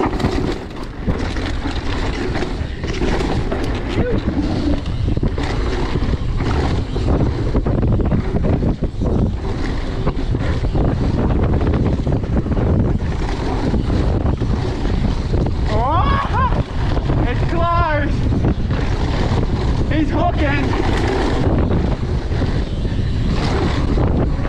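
Wind rushing over a chest-mounted action camera and tyres rattling over a dirt trail during a fast mountain-bike descent, loud and steady. A few short pitched sounds cut in over it after about sixteen seconds.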